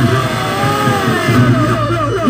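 Reog Ponorogo gamelan accompaniment playing: a steady low drum-and-gong pulse under a reed melody line (slompret) that slides up and down in pitch.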